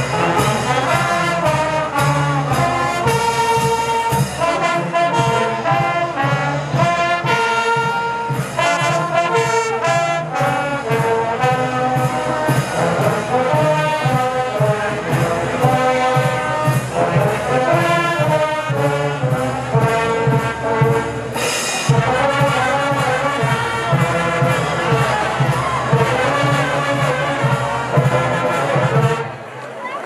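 Brass band of trumpets, trombones, saxophones and sousaphones with bass drum and snare drum playing a lively tune, stopping just before the end.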